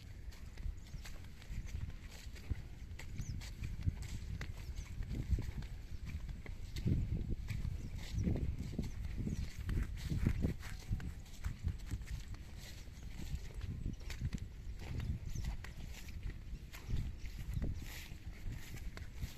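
Footsteps of a person walking on soft, rain-soaked field soil: an irregular series of soft low thuds, busiest in the middle.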